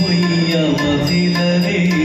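Live Indian ensemble music from a stage band: a steady held drone under gliding melody, with a quick percussion beat of about four strokes a second.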